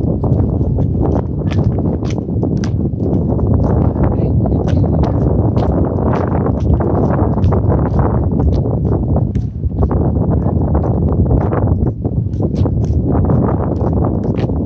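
Wind buffeting the microphone, a loud continuous low rumble, with footsteps on concrete clicking through it a couple of times a second.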